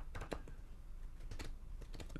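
A few soft, sharp clicks: a cluster in the first half-second and another pair about a second and a half in.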